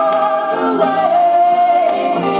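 Gospel singing played from a vinyl LP record, with a voice sliding down onto one long held note through the second half, over lower accompanying notes.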